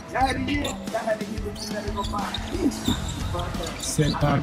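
Basketball dribbled on a hardwood gym floor, repeated bounces as a player drives to the basket, over arena music and voices.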